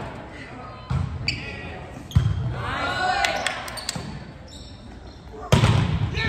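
A volleyball being hit during a rally: three sharp thuds of the ball on hands and arms, about a second in, just after two seconds and near the end, with players shouting between them.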